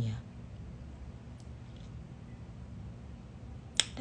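A pause in speech holding a low, steady room hum, broken by one sharp click just before the end.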